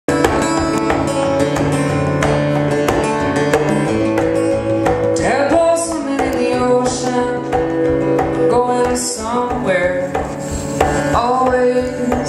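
Live acoustic music: a guitar played with steady, rhythmic percussive strokes. From about five seconds in, a voice sings short phrases over it.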